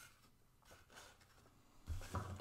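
Near silence with faint rustling of folded paper being handled, and a soft low thump near the end.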